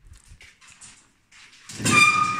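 Soft irregular steps and handling clicks, then near the end a loud knock from an interior door with a metallic ring that fades over about a second.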